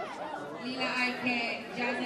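Crowd of many people talking and chattering over one another, with a low steady note breaking in and out underneath.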